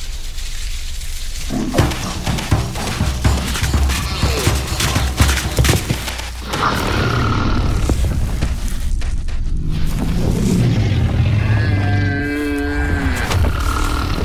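Animated-film soundtrack for a chase: music under heavy, deep rumbling and thuds with dense clatter. A wavering animal cry comes about twelve seconds in.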